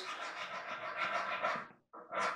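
A hand file scraping across the steel breech plug of a muzzleloader barrel clamped in a vise, draw-filing its flats down to fit the barrel channel. The scraping is continuous and stops shortly before the end.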